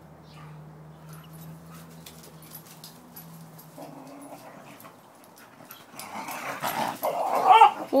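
Dogs play-fighting: from about six seconds in, loud rough growling and scuffling builds up, ending in a short high whine.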